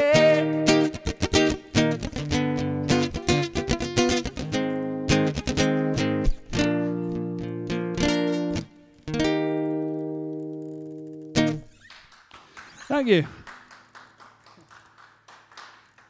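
Acoustic guitar strumming the closing chords of a song, with a short break, then a last chord left to ring and fade before one final strum.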